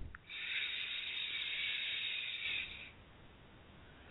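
A woman's long in-breath close to the microphone, a soft breathy hiss lasting about two and a half seconds and fading away, taken as the inhale of a guided breathing exercise.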